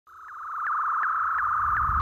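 A steady, pure electronic tone fades in and holds, with faint regular ticks nearly three times a second. It is the sound design of an animated logo intro.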